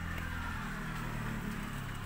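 Steady low hum of an engine running.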